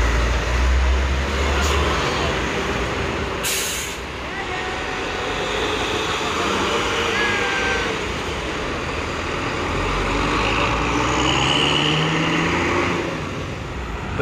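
Sinar Jaya intercity coach running close by with a deep diesel rumble. About three and a half seconds in there is a short hiss of air from its air brakes. Toward the end the engine note climbs as it pulls away.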